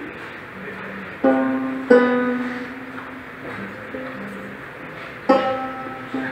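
Banjo being tuned: single strings plucked one at a time and left to ring out while a tuning peg is turned, three distinct plucks about a second in, near two seconds and about five seconds in.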